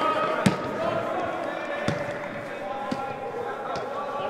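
Players' distant shouts echoing in a large indoor football hall, with three sharp thuds of a football being kicked about half a second, two seconds and three seconds in.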